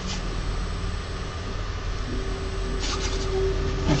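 Creality Halot R6 resin printer's Z-axis stepper motor driving the build plate up its lead screw after levelling: a steady motor whine that starts about halfway through, over a low hum.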